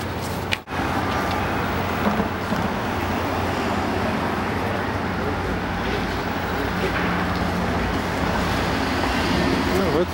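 Steady city street noise: traffic rumble with indistinct voices of people around. The sound drops out very briefly about half a second in.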